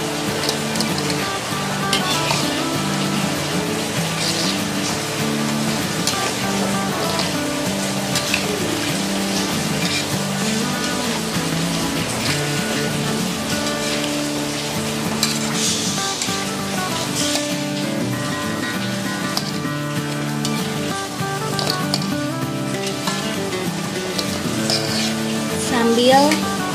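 Lumpia-wrapped sausage rolls deep-frying in oil in an aluminium wok over medium-low heat, sizzling steadily, while a metal spatula stirs and turns them. Background music plays throughout.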